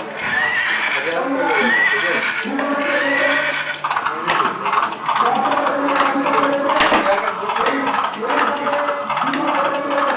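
Horse neighing and whinnying, call after call, with clip-clop hoofbeats: the recorded sound effects of a plush rocking horse.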